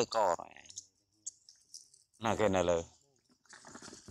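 A man's voice calling out twice, each a short drawn-out call with a wavering pitch, with faint scattered clicks in between.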